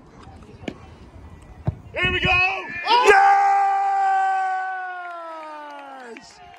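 A free kick is struck with a single thud, and the ball goes in. A man's excited shouts then rise into one long, held celebratory yell that slowly falls in pitch and fades as a goal is scored.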